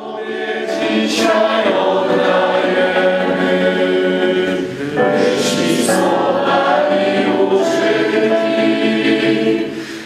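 Mixed choir of men's and women's voices singing a sacred choral piece in harmony, in two long sustained phrases with a change of chord about halfway through.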